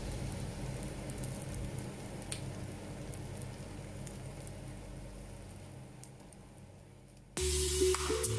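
Beaten eggs sizzling as they fry in butter in a non-stick pan, with a few faint pops, growing gradually quieter. Music starts abruptly near the end.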